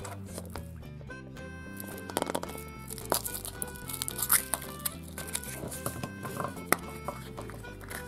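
Soft background music playing, with the foil wrapper of a Kinder Surprise chocolate egg crinkling and crackling in short bursts as it is peeled off by hand.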